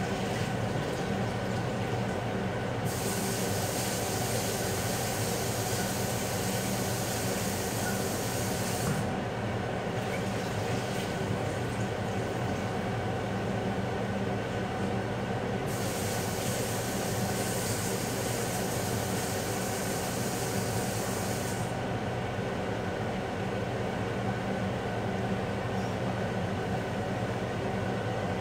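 A steady mechanical hum with a low buzz, joined twice by a high hiss that lasts about six seconds each time: once a few seconds in and again just past the middle.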